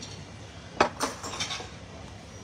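A few sharp clinks of glassware and dishes on a table, the loudest two close together about a second in, followed by lighter ones.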